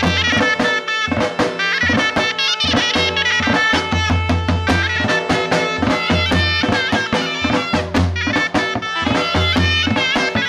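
Live folk dance music: a davul bass drum beaten with a stick, keeping a steady thumping beat under a reed wind instrument playing a fast melody.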